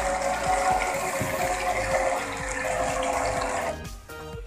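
Portable on-the-go jar blender running, its small motor whirring steadily while the smoothie churns inside the jar. The motor stops shortly before the end.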